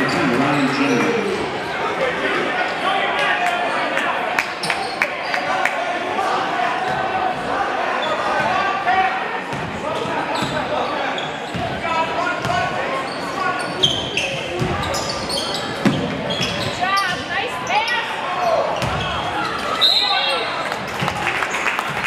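A basketball dribbled and bouncing on a hardwood gym floor, with short squeaks of shoes on the court, over the chatter of a crowd in a large echoing gym.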